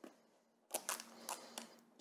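Faint crackling and a few small clicks of a clear plastic sleeve and tape being handled on a plastic pen case, starting about two-thirds of a second in.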